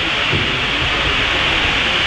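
Steady hiss of steam from the two Bulleid Pacific steam locomotives heading the train, heard from a carriage further back as the train begins to move off.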